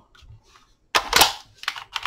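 An 18V Ridgid lithium battery pack slides onto a Ridgid Gen 5 brushless drill's handle with a clack about a second in, followed by a few lighter plastic clicks. No motor sound follows: the drill is dead, which the owner puts down to a control board fault.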